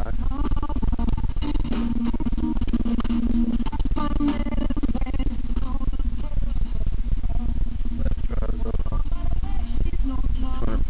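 A portable stereo's radio playing music with a voice over it through its built-in speaker, at a steady level throughout.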